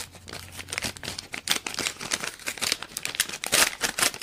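A paper envelope being torn open right up against the microphone: a dense run of crackling rips and crinkles, loudest a little before the end.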